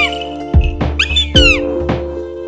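Background music with a steady drum beat and held notes, with short high swooping cries over it near the start and again just past the middle.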